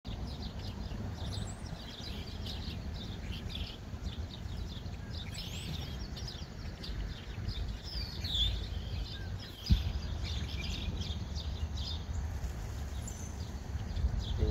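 A flock of small birds making many short, overlapping chirps as they fly over and settle into a reed bed at dusk, over a steady low rumble. A single bump about ten seconds in is the loudest sound.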